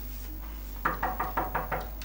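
Knocking on a door: a quick run of about seven knocks, starting just under a second in.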